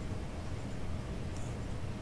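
Steady low background hum of a room recording, with one faint click about one and a half seconds in.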